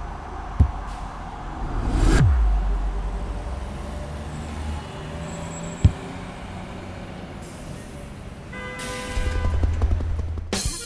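Sound-effect bed of a stop-motion film: a low rumbling background with a falling whoosh and swell about two seconds in and two sharp clicks, then music with brass comes in near the end.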